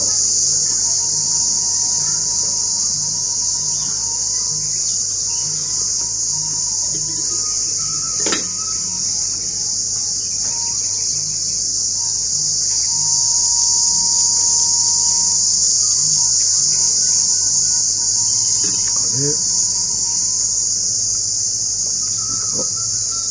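A steady, high-pitched chorus of insects, constant and loud throughout. A single sharp click sounds about eight seconds in.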